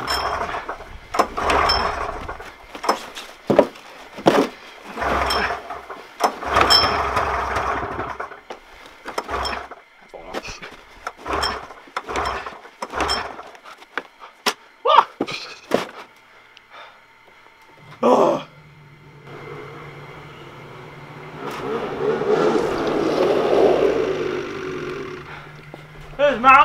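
Snowmobile engine catching about eighteen seconds in and then running at a steady idle, after a run of scuffs and knocks.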